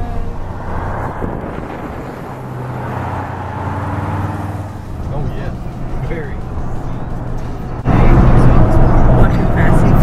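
Road and engine noise inside the cabin of a moving 2016 Toyota Sequoia: a steady low hum under a rushing haze, with indistinct voices. About eight seconds in it jumps suddenly louder.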